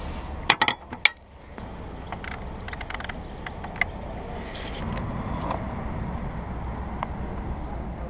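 Sharp metallic clinks of a BMW K75's hinged fuel filler cap being snapped shut, about half a second to a second in. These are followed by a run of lighter clicks from the speedometer's trip-meter reset knob being worked, all over a steady low rumble.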